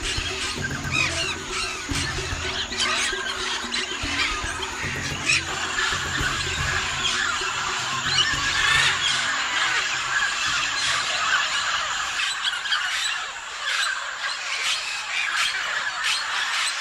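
A large flock of mealy parrots calling, a dense chorus of many overlapping calls, over soft background music whose low notes fade out about three quarters of the way through.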